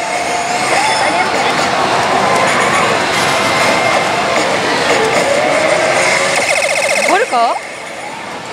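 Oshi! Bancho ZERO pachislot machine playing its effect sounds over the steady din of a pachislot parlour, with wavering electronic tones during a premonition sequence. Near the end comes a fast run of beeps, then quick rising and falling wails.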